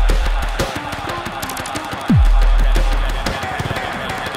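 Electronic noise-rap remix instrumental: rapid crackling glitch clicks over deep sub-bass. A held sub-bass tone fades about half a second in, and about two seconds in a bass hit drops sharply in pitch into another long, loud sub-bass tone.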